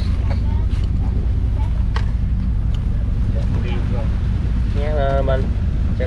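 Fishing trawler's engine running steadily with a low drone, while light clicks and knocks come from hands sorting a pile of freshly caught small squid and fish on the deck.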